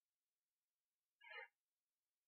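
Near silence, broken once a little over a second in by a short, faint cry-like sound lasting about a third of a second.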